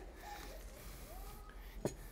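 A glass jar set down on a table, one sharp knock near the end, over faint voices.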